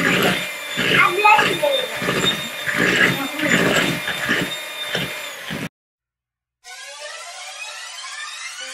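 Electric hand mixer running steadily in a bowl of cake batter, with voices over it, until it cuts off abruptly about six seconds in. After a second of silence, music with rising sweeping tones begins.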